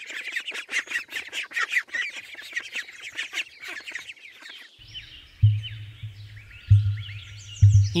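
A brood of ducklings peeping rapidly and without pause, many high calls overlapping. About five seconds in, music with a low thumping beat about once a second comes in under fainter chirps.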